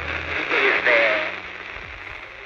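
Police radio transmission: a hiss of static with a faint, crackly voice, getting quieter in the second half.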